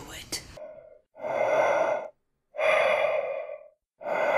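A woman choking and gasping for air while being strangled: two long, strained gasps about a second apart, each lasting about a second.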